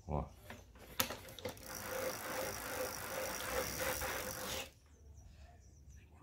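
Bicycle freewheel on the trike's front wheel hub clicking as the wheel spins free of the pedal. A few separate clicks come first, then a fast, even ratcheting buzz for about three seconds that cuts off abruptly.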